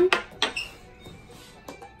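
A few light clinks of a spoon and glassware being handled on a table, sharpest in the first half-second, then faint ticks near the end.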